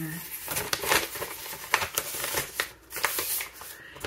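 Printed paper sheets rustling as they are picked up and handled, in a run of short crackles and snaps.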